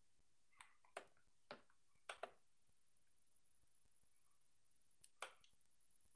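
Near silence with a few faint, sharp clicks: several in the first two seconds or so and one more about five seconds in.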